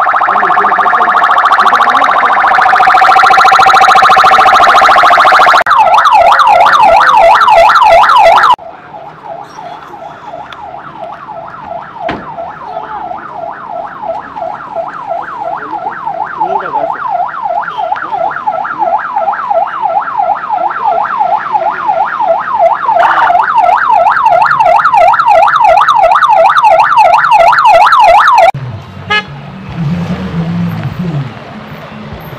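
Electronic siren sounding: first a steady blaring tone, then, about six seconds in, a fast up-and-down warble. The warble drops suddenly in loudness, swells back up over the next twenty seconds, and cuts off near the end.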